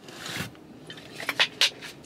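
A person drinking pre-workout from a plastic shaker bottle, with a few light clicks and knocks of the bottle about a second and a half in.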